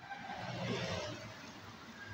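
Street traffic heard through an open doorway: a passing vehicle's noise swells within the first second, then eases off.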